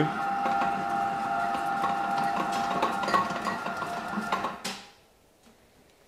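Large, old stand mixer kneading bread dough with its dough hook: a steady motor whine with scattered knocks and rattles from the wobbly machine. It cuts off suddenly about four and a half seconds in.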